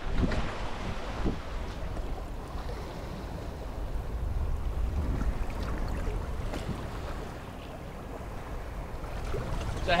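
Wind buffeting the microphone as a steady low rumble, with the rush of open sea around a sailing yacht.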